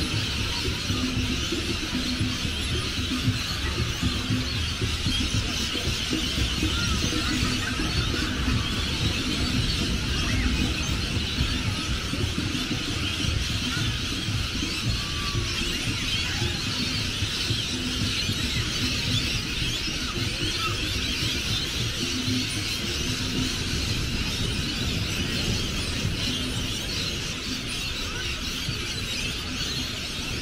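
A large flock of birds screeching and chattering continuously in the trees, many calls overlapping into one dense din, over a steady low rumble.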